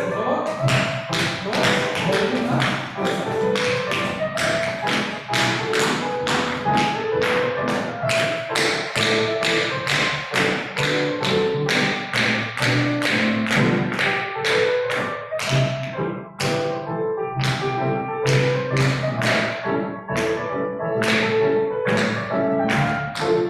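Tap shoes striking a hard floor in a steady, even rhythm of sharp taps, about three to four a second, played along with recorded music.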